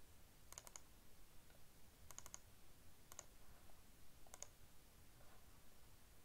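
A few faint computer mouse clicks in short clusters, some as quick pairs like double-clicks, spaced about a second apart, while a folder is picked in a file dialog.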